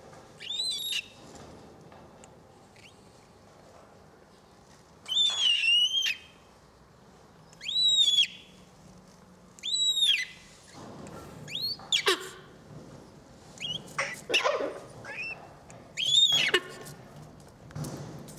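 Three-week-old umbrella cockatoo chicks giving begging calls: about seven short, high calls, each rising then falling in pitch, a couple of seconds apart.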